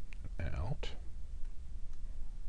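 A short breathy murmur of a man's voice about half a second in, falling in pitch and ending in a brief hiss, over a steady low hum.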